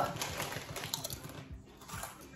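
Doritos tortilla chips being bitten and chewed, a quick, irregular run of crisp crunches.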